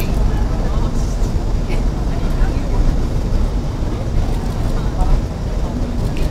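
Steady low rumble of outdoor street noise, with scattered voices from a crowd of onlookers.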